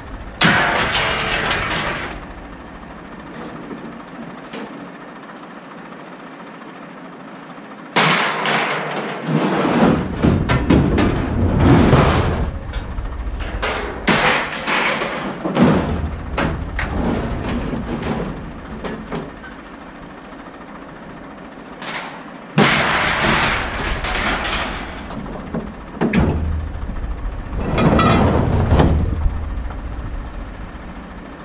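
Scrap metal thrown from a pickup bed onto a scrap pile, clattering and crashing in repeated bursts: one about a second in, a long run of crashes from about eight to sixteen seconds, and two more bursts near the end.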